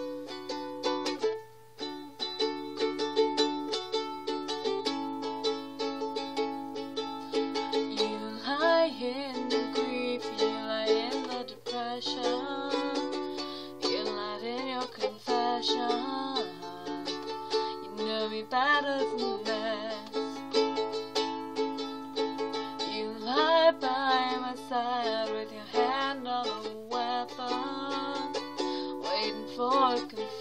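A Makala ukulele strummed in steady rhythmic chords. From about eight seconds in, a voice sings along over the strumming, in phrases that come and go.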